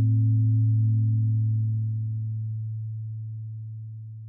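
Low, steady ringing tone of an intro sound effect, with a few faint higher overtones, slowly fading out from about a second in.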